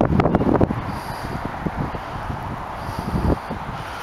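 Wind buffeting the microphone outdoors: strong low rumbling gusts for the first moment, then a steadier rushing hiss with occasional low thumps.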